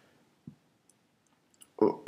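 A pause in a man's speech: near silence with one soft short thump about a quarter of the way in and a few faint clicks. His voice comes back in near the end.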